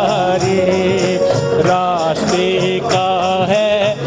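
A devotional worship song: a singing voice carries a melody over a steady beat of dholak drum and hand claps.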